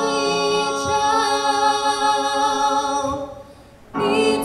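A male and a female voice singing a slow duet together, holding long notes with vibrato. About three seconds in the singing fades into a brief pause, and it comes back in right at the end.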